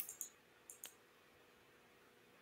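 A few faint, short clicks over near silence, two close together at the start and two more just before a second in, with a faint steady hum underneath.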